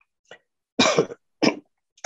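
A person coughing: one louder cough about a second in, then a short second cough half a second later.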